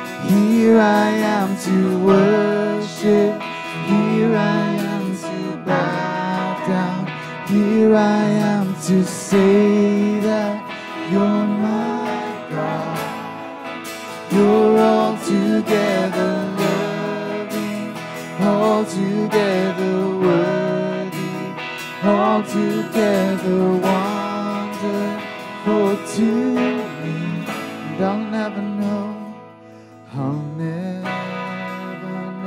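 Live worship band playing a song: strummed acoustic guitar with electric guitar and keyboard, and a woman singing the melody in phrases. The music drops away briefly just before the end.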